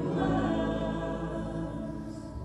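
Church worship music: voices singing long held notes with accompaniment, gradually getting quieter.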